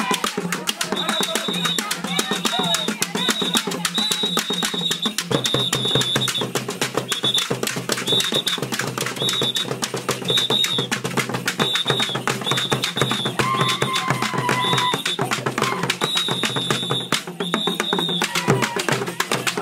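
Live Acholi dance music: drums and calabashes struck with sticks in a fast, dense beat. A shrill high note is repeated in short blasts about twice a second over it, with voices mixed in.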